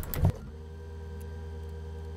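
A few sharp clicks and a soft knock at the start, then a steady, even hum with a faint higher whine inside a forklift cab.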